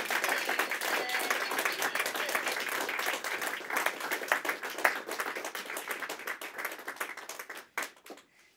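A small group of people applauding, hand claps that die away near the end.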